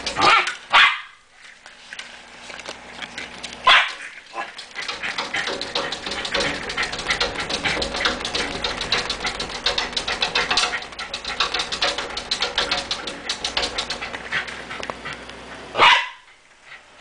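A pet dog barking at a squirrel: two short barks at the start, one about four seconds in and one at the very end. Between the barks runs a steady, rapidly ticking noise.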